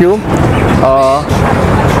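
Steady, loud engine-like running noise, with a short spoken word about a second in.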